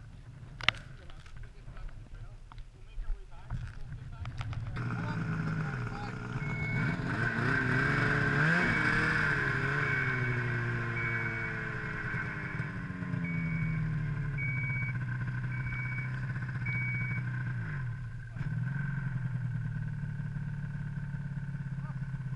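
Snowmobile engine running, rising in pitch as it revs up and then falling back to a steady run, with a brief drop about eighteen seconds in. A short high beep repeats about once a second while it runs; scattered knocks and clicks come before the engine is heard.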